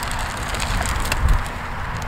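One-row push corn planter rolling through firm, almost no-till soil, its wheels crunching over clods and its mechanism rattling with a few faint clicks, over a low, steady rumble.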